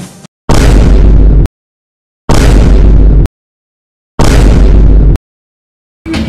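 Three loud blasts from stage CO2 jet cannons, each about a second long and cut off sharply, with silence between them.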